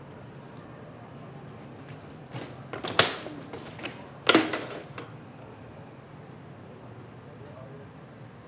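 A BMX bike hitting hard ground: a sharp crack about three seconds in, a short rattle, then a second hard hit with a brief ring, typical of a trick's take-off and landing.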